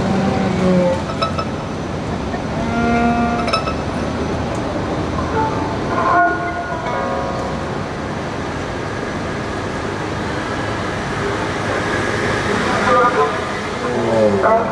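Free-improvised acoustic music on violin, cello and two guitars: sparse held and sliding bowed notes, with tones gliding downward near the end, over a steady haze of street traffic noise.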